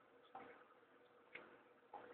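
Near silence broken by three faint, sharp clicks: one about a third of a second in, one a second later, and one near the end, over a faint steady hum.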